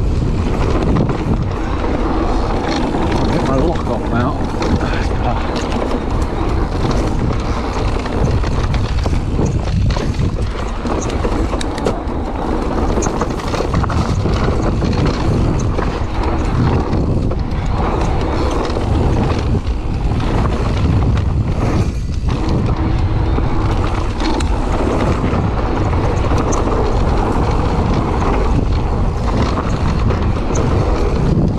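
Mountain bike riding fast down a dry dirt singletrack: tyres rolling over dirt and stones, the bike rattling with small clicks and knocks, and wind buffeting the microphone, all steady and loud. An indistinct voice comes through at times.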